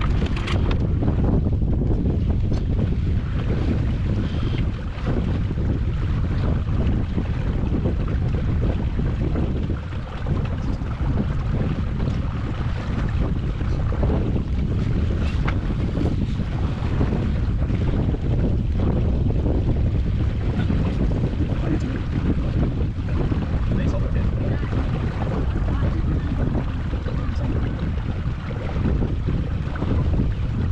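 Steady wind buffeting the microphone aboard a Scruffie 16 wooden sailing dinghy under way, with water washing along the hull.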